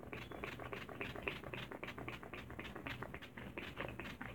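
Pump-mist bottle of Mario Badescu facial spray spritzed onto the face over and over in quick, faint, short hisses, several a second.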